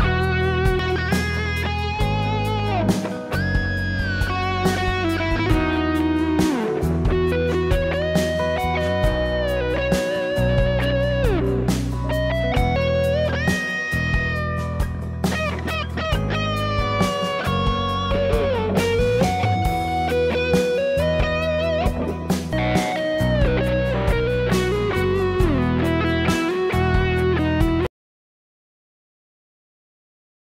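Electric guitar lead with string bends and wide vibrato played over a backing track. It is heard first as recorded direct through a Behringer Ultra G DI box with 4x12 cabinet simulation, then partway through as recorded by a Shure SM57 miked up at the guitar cabinet. The playback stops abruptly at the end.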